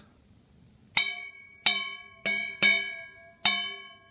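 Stainless steel bowl holding a little water, struck five times with the end of a knife, beginning about a second in; each tap rings out with several clear tones that fade before the next strike.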